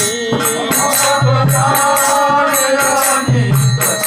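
Bengali devotional kirtan: a man's voice singing long, wavering held notes over a steady rhythm of small percussion.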